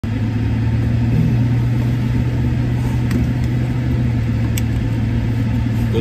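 Car on the move, a steady low engine and road drone, with a few faint clicks around the middle.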